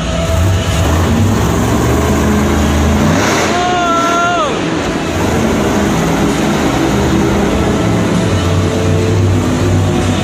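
Monster truck engine revving hard as the Bigfoot truck drives up onto and over a row of junked cars. The pitch climbs to a peak about three seconds in and then drops back.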